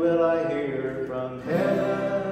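A man singing to his own acoustic guitar strumming, holding long notes, with a new strum and sung phrase about one and a half seconds in.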